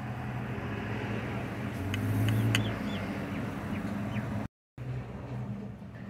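An engine running nearby, a steady low hum that grows louder for a moment about two seconds in, with a few short high chirps over it.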